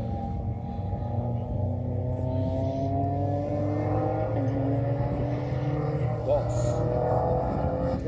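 Sports car engine heard from trackside at a distance, holding a steady note whose pitch climbs slowly as it accelerates, with a short dip in pitch about four seconds in, like a gear change.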